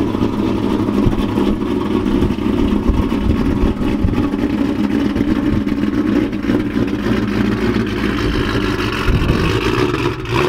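Supercharged 4.6-litre V8 of a 2003–04 Ford Mustang SVT Cobra idling steadily through its exhaust.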